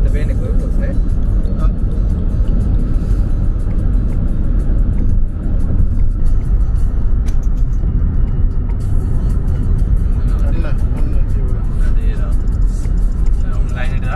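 Road and engine noise inside a car cabin at motorway speed: a steady low rumble. Music plays over it, and a voice is heard faintly near the end.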